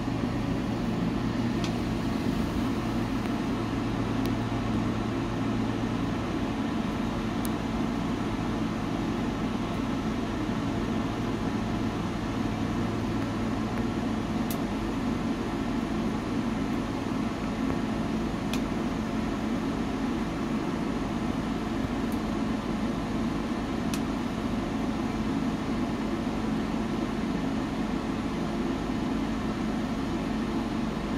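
A steady, fan-like mechanical hum with a handful of faint, sharp crackles from logs burning in a wood stove, a few seconds apart.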